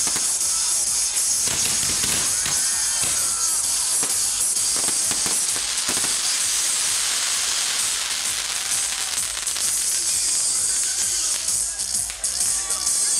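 Castillo fireworks tower firing: a steady hissing spray of sparks with rapid crackling pops throughout, and a few short whistling glides about two to three seconds in.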